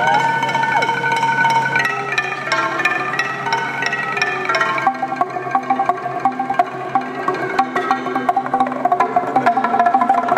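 Music of long held tones that slide in pitch, giving way about halfway through to a txalaparta: wooden planks struck in a fast, even rhythm, ringing on a few repeating notes.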